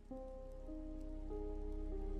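Soft ambient background music of sustained, slowly shifting notes, a new note entering roughly every half second, over a faint light rain sound.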